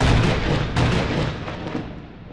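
A sudden loud crash sound effect, like a thunderclap, starting out of silence, crackling for about a second and a half and then rumbling away slowly.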